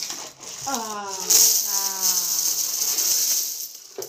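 Coins rattling and pouring out of a plastic coin bank as it is tipped and shaken over a heap of coins, loudest from about a second in until near the end. A long drawn-out voice sounds over it.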